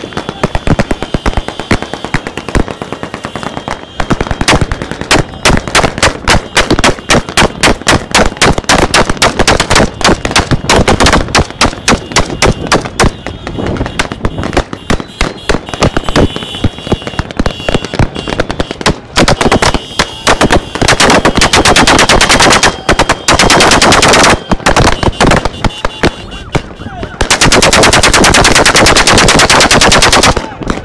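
Automatic rifles fired into the air by several shooters at once, in overlapping bursts that become near-continuous a few seconds in. There are long unbroken volleys in the second half.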